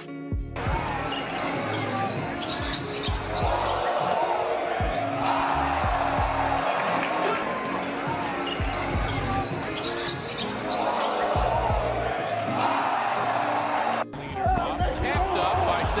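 Basketball game sound from a gym: a ball being dribbled on the court amid loud crowd noise and chatter. The crowd swells about four seconds in and again about ten seconds in. Near the end the sound cuts abruptly to a different arena crowd.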